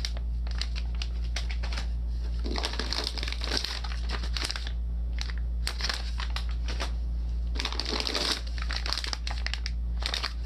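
Foil filament pouches crinkling and crackling as they are handled and pressed into a foam insert, in bursts of rustling, over a steady low hum.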